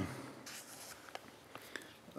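Faint rustle of paper being handled at a lectern, with a few soft clicks.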